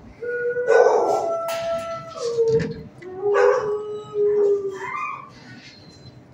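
A dog howling and whining: about three long, drawn-out cries that hold a pitch and then slide lower, followed by a short rising cry near the end.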